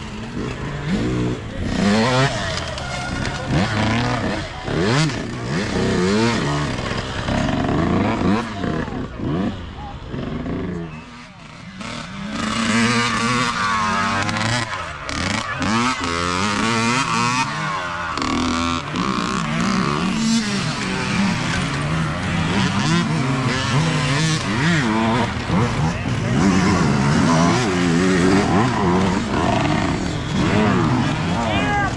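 Small youth dirt bike engines revving as riders pass one after another, the pitch rising and falling with the throttle. Brief lull about eleven seconds in before more bikes come through.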